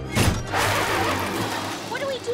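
Cartoon sound effect of a stuck van's wheels spinning in mud as the gas pedal is stomped: a sharp hit, then a long rushing spray that slowly fades.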